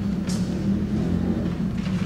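A steady low background rumble and hum, with one brief soft hiss about a third of a second in.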